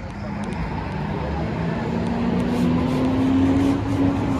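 Street traffic: a motor vehicle's engine running close by, its note rising slightly and growing louder toward the end.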